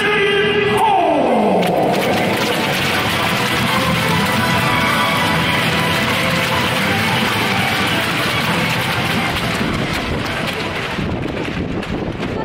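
Music over the stadium's public-address system, echoing around the stands. About a second in, a falling sweep effect glides down, followed by a dense, noisy wash of sound that thins near the end.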